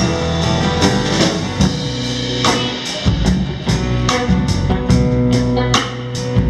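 Live band playing an instrumental passage with no singing: electric and acoustic guitars, upright double bass and drum kit, over a steady beat.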